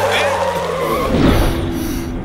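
A police jeep's engine running with tyre skidding, mixed with voices in a film soundtrack.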